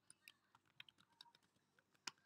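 Faint, quick typing on a computer keyboard: a run of light key clicks as a password is entered.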